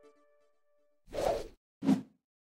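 Two whoosh transition sound effects, one about a second in and a shorter one near the end, after the last note of the intro music fades out.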